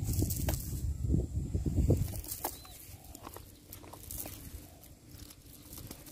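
Rustling and scattered clicks of a wet cast net being handled on dry grass as fish are picked out, louder and with a low rumble in the first two seconds, then quieter.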